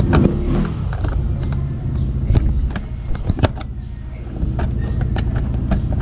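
Screwdriver working a screw back into the plastic body panel of a Yamaha NMAX scooter, with a few sharp clicks, the strongest just after the start and at about two and a half and three and a half seconds. Under it runs a steady low engine hum.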